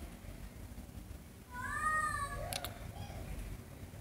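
A house cat meows once, a single call that rises then falls in pitch about one and a half seconds in. A couple of light clicks follow right after it, over a faint low background rumble.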